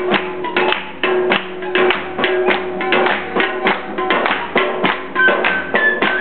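Traditional Balti folk music: a quick, even beat of drum strikes and hand claps over steady held tones, with a high melody line coming in near the end.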